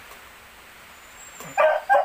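A dog barking twice in quick succession, short loud barks about a second and a half in, after a quiet stretch.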